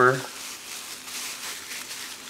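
Plastic grocery bags rustling and crinkling in the hands as strips of them are woven together, an uneven, continuous rustle.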